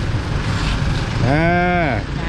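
A person's drawn-out "aah" about a second in, its pitch rising then falling, over a steady low hum of street noise.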